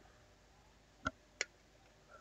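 Two short, sharp clicks about a third of a second apart, a little past the middle: hobby sprue cutters snipping plastic miniature parts off the sprue.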